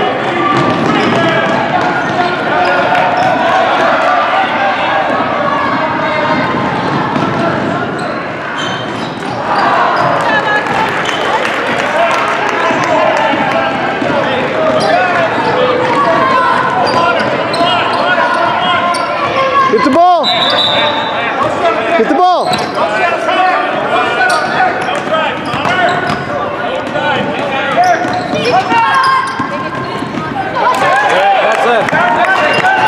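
A basketball dribbling and bouncing on a hardwood gym floor during play, under steady overlapping chatter and calls from spectators and players.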